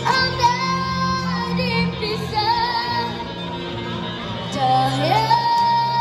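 A boy singing a Malay pop ballad live through a microphone over electric guitar accompaniment. He holds long high notes with vibrato: one right at the start, and another that slides up into place about five seconds in.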